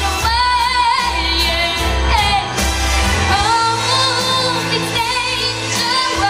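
A young female singer singing into a handheld microphone over a pop backing track, holding long high notes with vibrato over a steady bass line.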